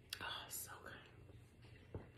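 A woman speaking softly in a breathy whisper.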